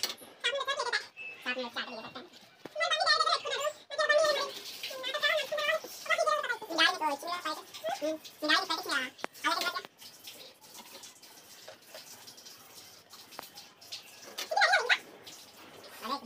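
People talking in a small room, with high-pitched voices, for about the first ten seconds; then a quieter stretch, and a short burst of speech near the end.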